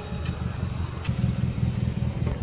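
Low rumble of a car engine running at idle, with two light clicks in the first second.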